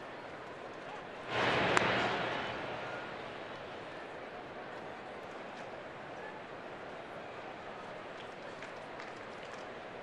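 Ballpark crowd noise swells briefly about a second in, with one sharp pop of a baseball into a leather glove near its peak. It then settles back to a steady crowd murmur.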